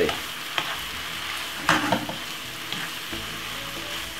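Shredded cabbage and mixed vegetables sizzling steadily in a non-stick frying pan over medium heat, while a wooden spatula stirs them, scraping the pan with a few short strokes about a second apart.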